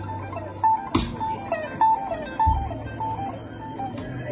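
Live blues band playing: an electric guitar lead repeats a short high note and slides down from it, over bass, Hammond organ and drums, with a sharp drum hit about a second in.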